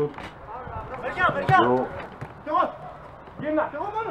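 A man's voice calling out in short phrases, three times, over the background of an outdoor five-a-side-style pitch.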